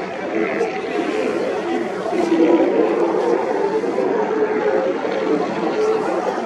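A continuous babble of many overlapping voices, loud and without pauses.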